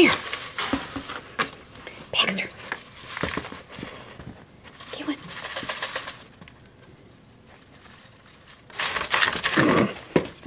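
Paper raffle tickets rustling and crinkling in a plastic bucket in irregular bursts as a rabbit noses and digs through them, with a louder rustle near the end as tickets spill out.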